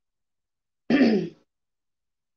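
A woman briefly clears her throat about a second in, a single short sound falling in pitch.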